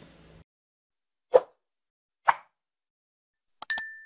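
Animated end-screen sound effects: two short, sharp pops about a second apart, then near the end a quick click followed by a brief ringing ding as the Subscribe button is clicked.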